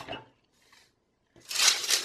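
A short sharp tap, then a gap of about a second, then a sheet of thin translucent paper rustling and crinkling loudly as it is handled, for the last half second.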